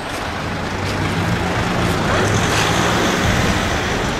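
A car driving past close by: low engine hum and tyre noise, swelling a little toward the middle.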